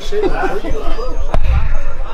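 Men's voices talking in the first second, then a sharp knock followed by a low rumble on the camera's microphone, typical of handling noise as the camera is moved.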